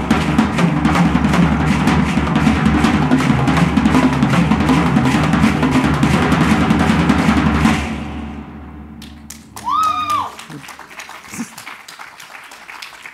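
Upbeat drum-driven music with a steady beat that fades out about eight seconds in, followed about two seconds later by a brief, arched tone that rises and falls.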